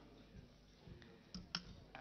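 Quiet room tone with three faint, sharp clicks in the second half, the clearest two about a second and a half in.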